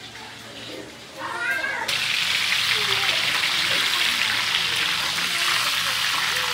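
Chicken pieces frying in a hot steel wok: a steady, loud sizzle that starts abruptly about two seconds in. Just before it, a brief high-pitched cry.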